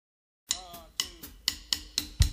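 Drum count-in for a punk rock song: sharp wooden clicks of drumsticks, about two a second, starting half a second in, with softer taps in between.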